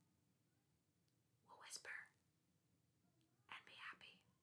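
Near silence, with a woman whispering two short phrases, one near the middle and one at the end.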